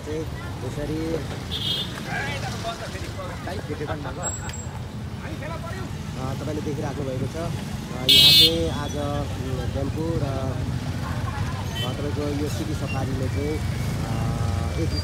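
Street traffic of motorcycles and three-wheeled tempos passing, with a steady engine-and-tyre rumble and the voices of passers-by. A short, loud horn beep sounds about eight seconds in, the loudest moment, and a fainter beep comes near two seconds in.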